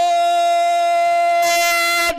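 A man's voice holding one long, steady chanted note over a microphone at the end of a recited Sanskrit verse line.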